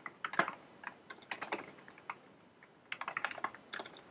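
Typing on a computer keyboard: scattered keystrokes, a pause of about a second in the middle, then a quick run of keystrokes near the end.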